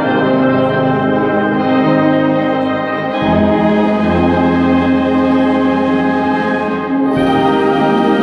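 Concert wind band playing a swing arrangement: held chords of woodwinds and brass, with a deep bass note coming in about three seconds in and the chord changing again near the end.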